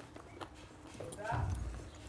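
Close-miked eating sounds: wet mouth clicks and smacks of chewing rice and chicken curry, with a short hummed voice sound a little past halfway.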